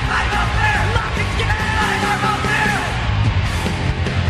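Punk rock recording: shouted vocals over loud band music, with the vocal line dropping out about three seconds in and the instruments carrying on.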